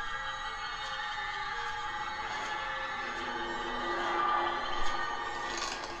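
Trailer score of sustained, droning tones over a slow line of held low notes, with faint regular ticks and a swell about four to five seconds in.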